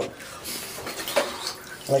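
Water sloshing and lapping in a filled bathtub as a person lying in it shifts and moves his hands, with a few small splashes.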